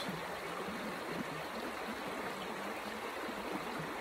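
Steady, even rushing of running water, as from a stream.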